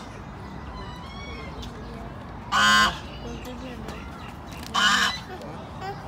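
Domestic goose giving two loud honks, about two seconds apart.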